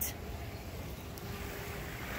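Low rumble of wind on a phone microphone outdoors, with a faint steady hum joining in about a second in.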